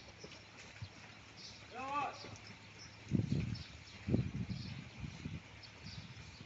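Holstein dairy cows' hooves clopping and scuffing on a concrete floor as the herd walks in to be milked. There are two duller thumps after about three seconds, and a brief voice about two seconds in.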